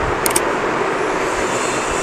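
Steady rushing background noise with two brief, faint clicks about a quarter of a second in.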